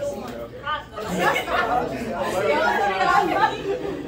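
Several people talking over one another at once. The chatter gets louder from about a second in.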